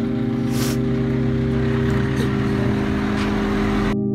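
Background music of a steady low drone, laid over an even outdoor rumble and hiss.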